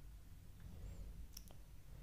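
Near silence: faint room hum, with two faint clicks in quick succession about two-thirds of the way through.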